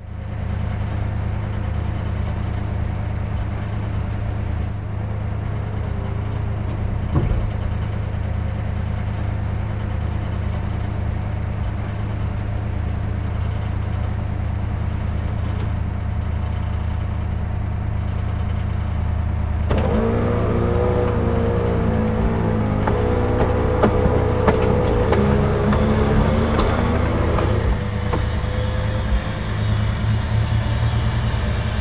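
1957 Ford Fairlane 500 Skyliner engine idling steadily in neutral. About two-thirds of the way through, the electric motors of the retractable hardtop start and add a louder pitched hum over the idle as the roof begins to lift.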